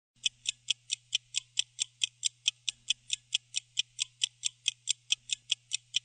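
Fast, even clock ticking, about four and a half ticks a second, over a low steady tone.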